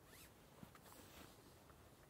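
Faint zipper being pulled and camping gear being handled, with one soft knock about half a second in.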